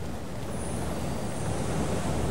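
Steady low background rumble of distant road traffic.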